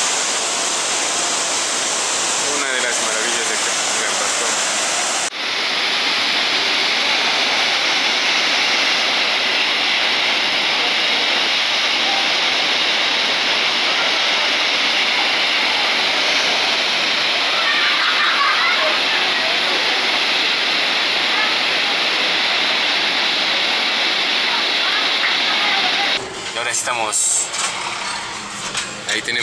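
Loud, steady rush of the Pailón del Diablo waterfall and the white water churning in its rock gorge, with an abrupt cut about five seconds in to another stretch of steady water noise. Near the end the water stops and gives way to road traffic heard from inside a moving car.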